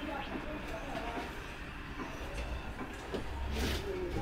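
Low, steady room rumble with faint murmured voices, and a brief rustle about three and a half seconds in.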